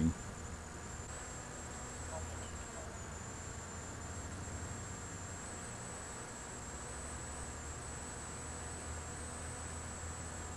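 Brushless electric motor and propeller of a TekSumo flying wing running at a steady cruise throttle: an even buzzing drone with a thin high whine on top that wavers slightly in pitch.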